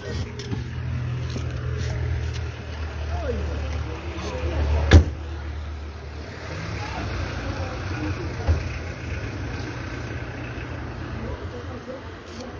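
A car engine running close by as a steady low hum, which gives way to a rougher rumble about six seconds in, with a sharp knock about five seconds in.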